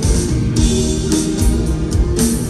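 A rock band playing live, with electric guitars, bass, keyboards and drums, the drum and cymbal strokes landing about twice a second.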